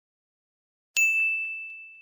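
A single bright chime sound effect, struck about halfway in, ringing on one clear tone and fading over about a second. It serves as a transition ding between vocabulary slides.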